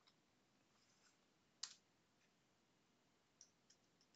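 Near silence with a few faint clicks from working a computer: one sharper click about one and a half seconds in, and two smaller ones near the end.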